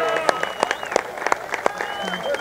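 A small crowd applauding, the separate hand claps coming at an uneven pace, with voices calling out over them.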